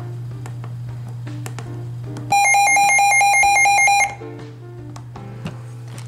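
Midland WR120 weather radio sounding its warning alert tone as a test: a loud, rapid pulsing beep that starts a little over two seconds in and stops abruptly under two seconds later.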